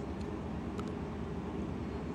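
Steady low background rumble picked up by a phone's microphone, cutting in suddenly after a silent gap in the stream's audio, with a faint tick a little under a second in.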